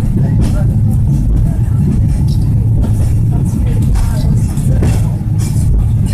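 Hong Kong Peak Tram funicular car running on its track, a steady loud low rumble heard from inside the car, with a few faint clicks.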